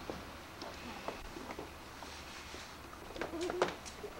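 Soft clicks and knocks of an infant car seat and its straps being handled while a newborn is settled in. About three seconds in comes a brief soft cooing voice.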